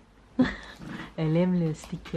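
A short vocal sound, then a drawn-out vocalisation that rises and falls in pitch, about a second in.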